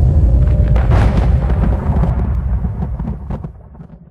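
Dramatic trailer-style sound effect: a deep, loud rumble with a few sharp hits scattered through it, dying away near the end.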